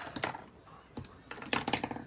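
A run of light clicks and taps, a few scattered and then a quick cluster about a second and a half in.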